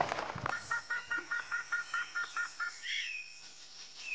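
A songbird calling: a rapid, even series of short chirps, about seven a second for two seconds, then a short curving whistled call near the end. It opens with a last crunch of a footstep on gravel.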